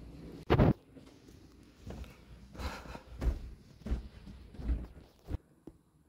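A sharp thump about half a second in, then a series of footsteps on a hard floor, roughly one every 0.7 seconds.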